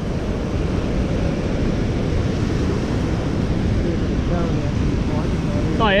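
Steady loud rushing of turbulent white water churning through a canal below a dam spillway, with a deep rumble from the current.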